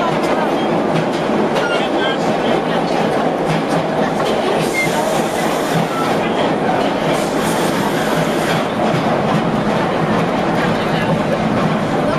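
Vintage R1/R9 subway train running through an underground station, heard from inside the front car: a steady rumble with wheels clicking over the rail joints. There are two short stretches of hiss about halfway through.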